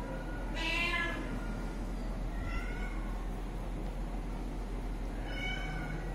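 A domestic cat meowing three times: the loudest call about half a second in, a fainter one around two and a half seconds, and a third near the end.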